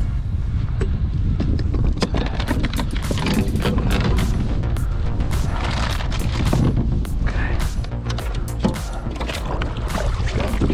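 Heavy wind rumbling on the microphone, with frequent sharp clicks and knocks from a fish and gear being handled aboard a plastic kayak, over a background music track.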